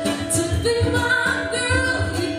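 A woman singing a song live with guitar accompaniment, her voice bending between notes and then holding a longer note in the second half.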